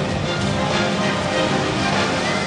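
Gymnastics floor-exercise music playing, with held notes throughout.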